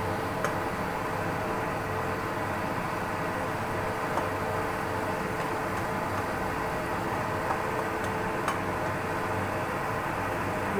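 Bamboo shoots simmering in bubbling broth in a wok over high heat, a steady hiss under a faint hum. A few sharp ticks, about four in all, from the spatula against the pan.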